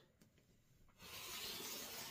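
Rotary cutter blade rolling through quilting cotton along a ruler on a cutting mat: a steady soft hiss that starts about a second in and lasts a little over a second.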